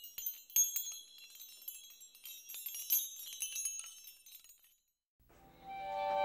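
A dense shower of high, tinkling chimes and glassy clinks that fades out about five seconds in. After a short gap, soft music with long held notes begins near the end.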